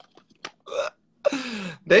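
A man laughing in two short bursts, the second longer, after a faint click.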